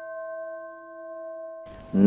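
A struck bell-like chime ringing out, several tones fading slowly together, then cut off suddenly near the end.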